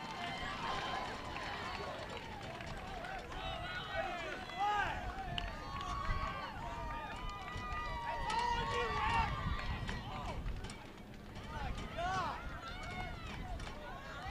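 Several distant voices calling out and talking over one another, none of them clear, with a steady low rumble underneath.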